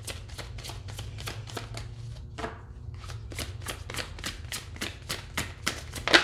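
A tarot deck being shuffled by hand, an overhand shuffle: a steady run of quick card slaps, about five a second, with a short break a little over two seconds in.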